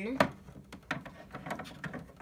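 Hard plastic clicking and tapping as an action figure is handled and set into a plastic playset: one sharp click a fraction of a second in, then a few lighter taps.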